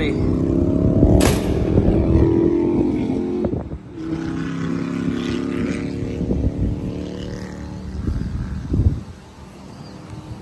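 An engine running, its pitch rising slightly over the first few seconds and holding steady after, fading near the end. A single sharp knock about a second in.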